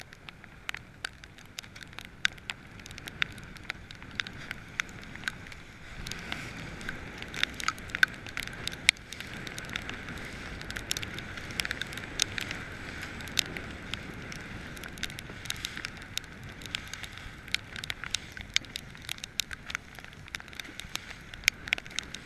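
Choppy sea and wind heard from a small boat underway: a rushing hiss that grows louder about six seconds in, scattered with many sharp crackling clicks.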